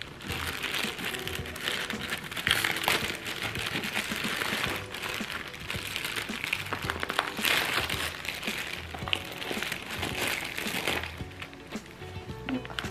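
Clear plastic bag crinkling in repeated bouts as it is handled and rustled, easing off near the end, over background music.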